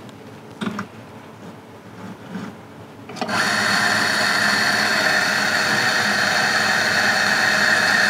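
Electric espresso grinder switching on about three seconds in and running steadily, grinding coffee beans straight into the portafilter held in its fork. The grinder is set to dose automatically, stopping by itself at a single or double espresso. It is preceded by a few faint handling knocks.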